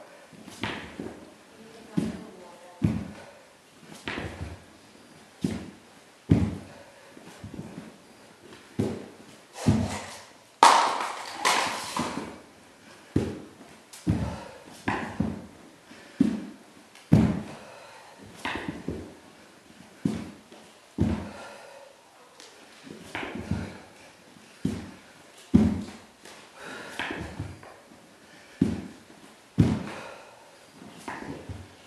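Burpees on a hardwood floor: hands and feet slapping and thudding down in a steady rhythm, about one thump a second, with the man's hard breathing between them and a louder, longer breath about eleven seconds in.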